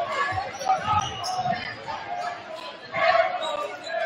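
Basketball being dribbled on a hardwood gym floor, a series of low bounces, under the echoing voices of players and spectators in the gym.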